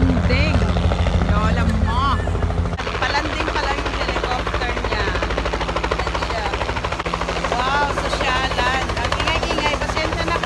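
Light helicopter with a two-blade main rotor flying low and descending to land, its rotor chopping in a rapid, even beat. The deep chop is loudest in the first three seconds, then eases off.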